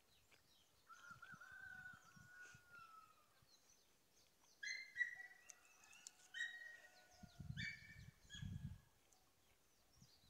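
Faint, distant bird calls: one drawn-out call starting about a second in, then a run of short, repeated higher calls through the middle. A couple of low, muffled thumps come near the end.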